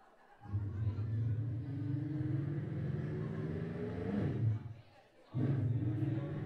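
A man's voice amplified through a microphone and PA, drawn out in long held calls rather than words: one call of about four seconds that bends up in pitch near its end, then a second starting near the end.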